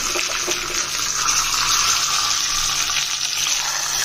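Curry leaves and dried red chillies frying in hot oil in a small kadai, a steady sizzle of the tempering for a yogurt curry.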